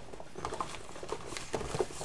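Faint, scattered light taps and rustles of empty plastic bottles and tubes being handled and set down.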